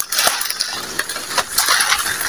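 Footsteps crunching through dry leaf litter and brushing past undergrowth, with irregular sharp snaps and clicks of twigs and leaves.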